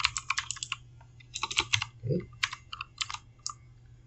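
Computer keyboard typing in three quick bursts of keystrokes with short pauses between.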